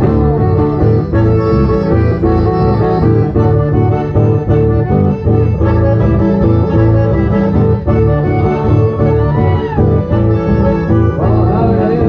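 Amplified live folk band playing chamamé, Corrientes-style accordion music, with the button accordion carrying the melody over strummed guitars and bass in a steady, lively rhythm.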